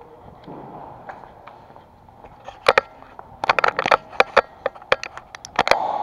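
Airsoft gunfire in close quarters: after a quiet stretch, a run of sharp, irregular cracks begins about two and a half seconds in, about a dozen over three seconds.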